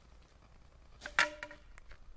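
A single sharp knock with a brief ringing tone about a second in, from the two poles of a giant bubble wand clacking together as they are lifted.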